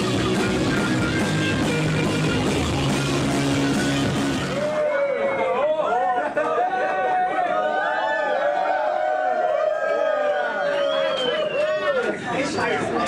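Live metal band with distorted guitars and drums playing until it stops suddenly about five seconds in; then a crowd cheering and shouting.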